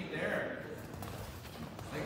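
Spectators' voices in a school gym: a short call in the first half second, then quieter background talk.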